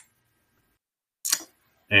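Dead silence on a noise-gated video-call line, broken just past a second in by one brief hiss-like noise, with a voice starting at the very end.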